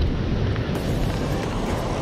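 Steady wind rumbling on the microphone over the rush of ocean surf breaking on rocks below.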